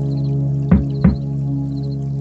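Instrumental background music: a sustained, steady synth chord with two soft percussive hits about a second in.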